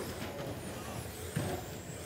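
Electric radio-controlled touring cars racing on a carpet track: a steady hiss of motors and tyres with faint high motor whine.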